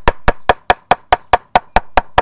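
Steel claw hammer beating petals and leaves folded in calico on a wooden breadboard, rapid even blows about five a second: flower bashing (hapazome) to pound the dye out of the petals into the cloth.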